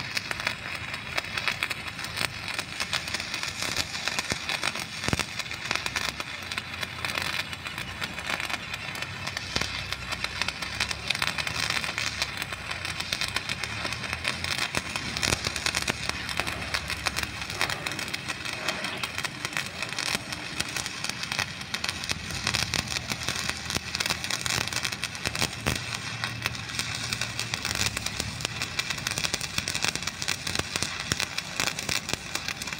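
Stick (shielded metal arc) welding arc crackling steadily as a flux-coated electrode burns along a steel joint, with no break in the arc.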